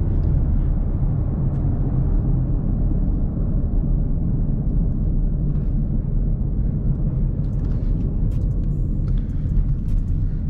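Steady in-cabin engine and road noise of a 2016 Ford Mustang EcoBoost, a 2.3-litre turbocharged four-cylinder with a manual gearbox, cruising in fourth gear: a low, even rumble. A few faint ticks come in near the end.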